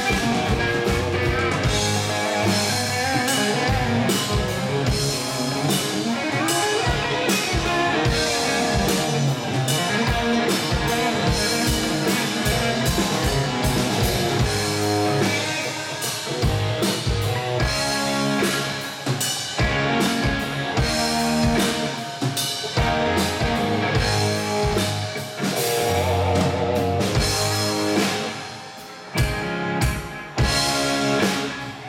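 Live rock band playing an instrumental passage with electric and acoustic guitars, bass and a drum kit keeping a steady beat. The level drops briefly near the end.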